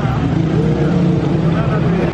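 A motor vehicle's engine running close by, a steady low drone, with faint voices under it.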